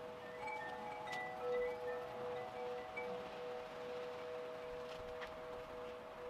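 Wind chimes ringing: several long metal tones, one of them pulsing, with a few short higher notes in the first few seconds.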